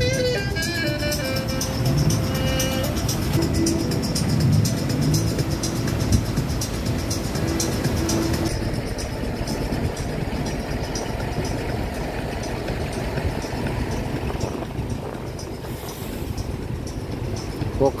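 Background music with a steady beat over outdoor street noise, the music stopping about halfway through; after that, a steady hum of road traffic passing close by.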